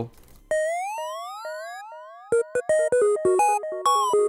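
Serum software synthesizer lead, sine waves with an octave-up FM layer, played live one note at a time from a computer keyboard mapped to the synth. The first note glides slowly upward in pitch with portamento, and after about two seconds comes a quick run of short notes, all held in key by the scale lock.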